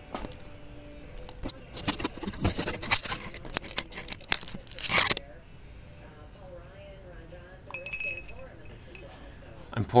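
A dense run of sharp clinks and rattles, like small hard objects jangling against glass or china, starting about a second and a half in and cutting off suddenly about five seconds in. A faint wavering tone follows.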